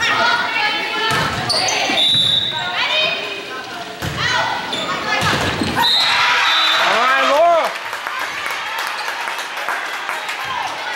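Volleyball struck several times during a rally in a large gym, with players and spectators calling and shouting over it. One loud rising-and-falling shout comes about seven seconds in.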